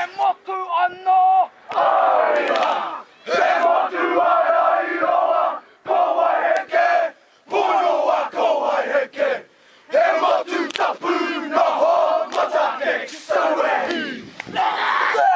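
A rugby team performing a haka: many young male voices shouting the chant together in unison, in short phrases broken by brief pauses.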